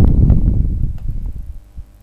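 A loud, low, muffled rumble on the microphone that begins sharply and fades away over about a second and a half.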